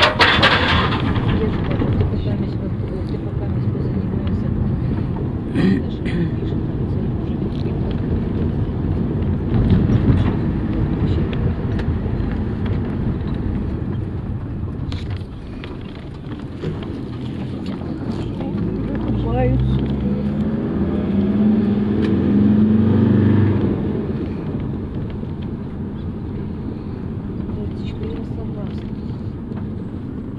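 Inside a bus cabin: the bus's diesel engine running as it drives, a steady low rumble. About two-thirds of the way in the engine rises in pitch and gets louder as the bus speeds up, then eases off.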